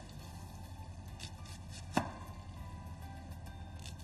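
Kitchen knife slicing an onion into thick rings on a cutting board: a few separate cuts, the sharpest about two seconds in, over faint background music.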